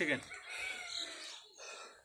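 A man's shouted command ends with a falling pitch, then a rooster crows faintly in the background, its call falling in pitch over about a second.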